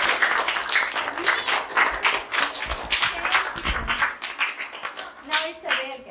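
A group of children clapping together, a dense patter of many hands that thins out and dies away about five seconds in.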